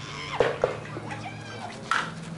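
Sharp crack of a slowpitch softball bat hitting the ball, with players shouting around it.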